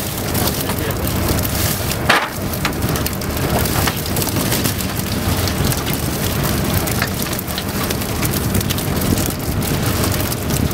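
Water splashing in a steady patter of many small, sharp splashes, as live pilchards churn and flip in the water, with one louder splash about two seconds in.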